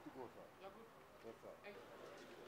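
Near silence with faint, indistinct voices murmuring in the background.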